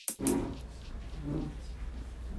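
Electronic background music cuts off right at the start. A low steady hum follows, with two faint, muffled low sounds about a quarter second and a second and a quarter in.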